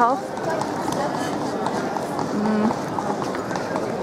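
Horse hooves clip-clopping on the stone paving, with the chatter of people in a busy square around them.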